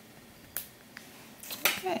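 A few sharp, light clicks from sewing tools and materials being handled on a glass tabletop: one about half a second in, a fainter one a second in, and several close together near the end, followed by a spoken "Okay".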